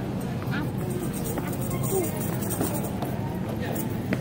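Supermarket ambience: a steady low rumble with faint background music and distant voices.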